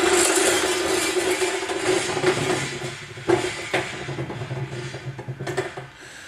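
Long microphone cable dragging and rubbing across interlocking plastic garage floor tiles: a rushing scrape that fades away over the first three seconds or so, with a few light knocks around the middle as the calibration microphone is set down on a stool.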